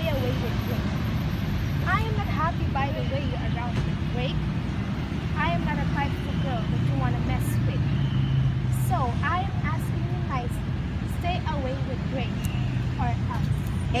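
Steady low rumble of road traffic under two young women's voices talking in turns.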